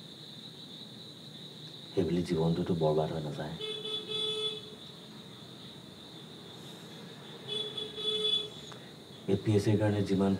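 A vehicle horn sounds twice, each toot about a second long and some four seconds apart, over a steady high chirring of crickets.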